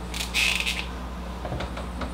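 Marker squeaking and scratching on a whiteboard as a letter is written, a short stroke of under a second near the start.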